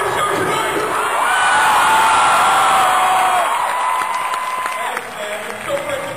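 Large arena audience cheering and applauding, with a couple of long, held whoops from fans standing out through the middle.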